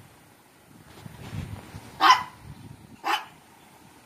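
A dog barking twice, short single barks about two and three seconds in, with a low rumble before them.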